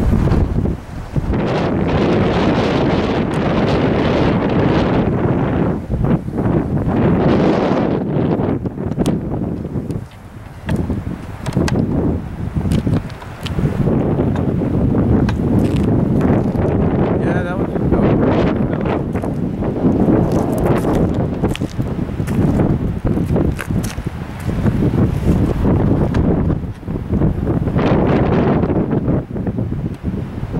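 Wind buffeting the microphone in gusts, a rumbling noise that rises and falls, with brief lulls about ten and thirteen seconds in.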